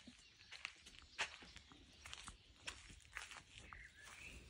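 Faint footsteps scuffing through straw bedding: a few soft, irregular rustles and light clicks.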